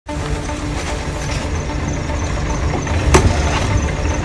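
Vehicle engine idling with a steady low rumble, and a sharp click about three seconds in as a car door is opened.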